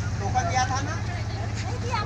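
Motorboat engine idling, a steady low running sound with an even pulse.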